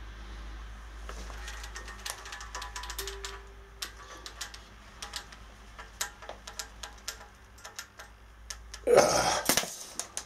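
Steel coil spring of a Haoying Gold 110 kg twister bar being bent fully closed by hand: a run of sharp, irregular clicks from the strained coils. Near the end there is a loud, noisy burst as the effort peaks and the bar is let go.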